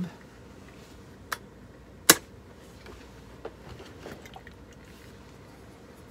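Handling knocks from the plastic base of a Rowenta steam generator iron as it is turned round on the pressing board: one sharp click about two seconds in, a fainter one just before it, and a few light taps after, over quiet room tone.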